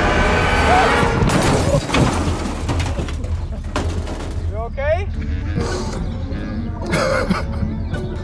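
Background music under a loud rushing noise of wind and sliding sand as a sandboard runs down a dune, dying away after about two seconds. A man's yelp and laughter follow, once in the middle and again near the end.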